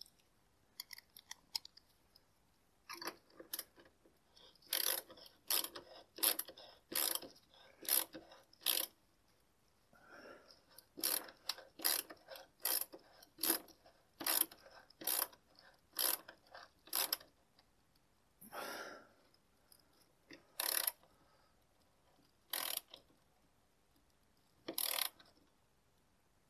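Worm-drive hose clamp being tightened around a broom's bristles with a hand driver: a run of short metallic clicks, about one every second, with a short pause about ten seconds in and only a few scattered clicks in the last third.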